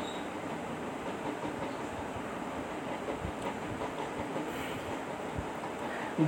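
Steady background noise with a couple of faint, short knocks, and no speech.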